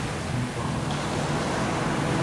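Steady rushing of large river waves, an even wash of water noise with no distinct strokes.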